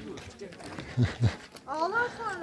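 Voices of people talking around, with a short pitched call that rises and falls near the end.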